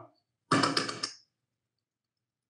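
A brief thump with a rustle, about half a second in, lasting under a second.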